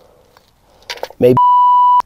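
A steady, high-pitched electronic censor bleep, a single pure tone lasting about half a second that starts a little past halfway and cuts off sharply, laid over a spoken word to blank it out. A short spoken word comes just before it.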